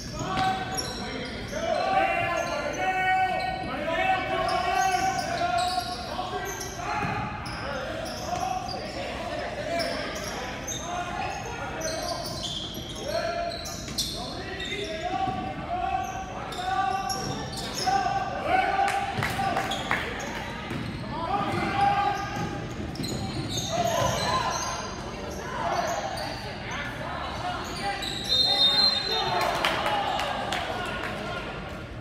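Basketball being dribbled on a hardwood gym floor, with players, coaches and spectators calling and shouting in the gymnasium. A short, high whistle blast sounds near the end.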